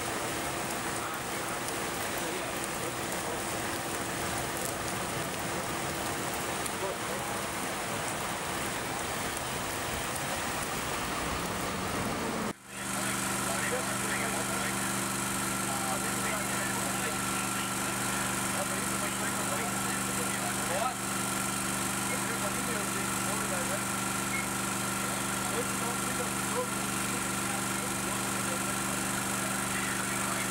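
Rain falling on a flooded road, a steady hiss with a faint hum under it. It cuts off abruptly about twelve seconds in. What follows is the steady drone of a small engine-driven pump running at a constant pitch, with water noise behind it.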